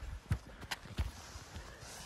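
Footsteps on dry, cracked badlands clay and loose stones: several short steps.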